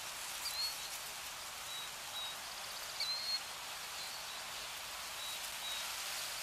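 A steady outdoor hiss with faint, short, high bird chirps scattered through it every second or so.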